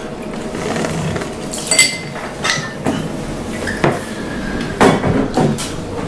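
White rum poured from the bottle into a metal jigger, with several light metal-on-glass clinks as the measure is handled and tipped into the mixing glass.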